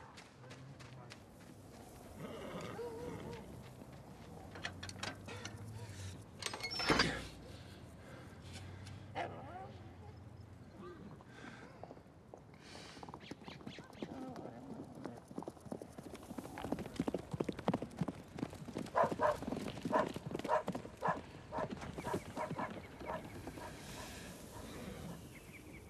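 A horse's hooves galloping on dry dirt, a fast run of hoofbeats that grows louder in the second half. A single sharp knock sounds about a third of the way in.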